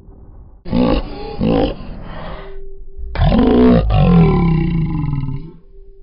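Logo outro sound effect: two loud deep vocal-like swells over a steady low music drone. The first is short; the second, about three seconds in, is longer and trails off falling in pitch.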